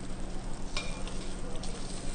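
Chicken pieces sizzling in butter in a stainless steel sauté pan as they are turned with metal tongs. Two light clicks of the tongs against the pan come about three-quarters of a second and about a second and a half in.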